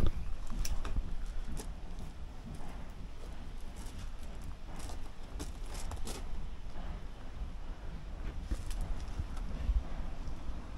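Outdoor background: a low rumble with a scattering of light clicks and taps at irregular intervals.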